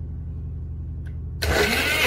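A personal blender switched on: a light click, then about one and a half seconds in its motor starts suddenly and runs loud, with a whine, as the blades churn fruit and milk into a smoothie.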